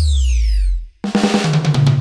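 Yamaha DTX electronic percussion pad played with sticks through a DJ-style Bhojpuri patch with bass: a held bass note under a falling sweep effect that cuts off a little before a second in, then after a brief gap a fast snare roll fill over a bass note.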